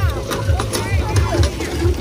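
Children's voices and crowd chatter, with music playing in the background and a low rumble.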